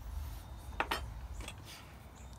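A few faint clicks and light clinks of a small bent metal wreath hanger being handled, over a low steady rumble.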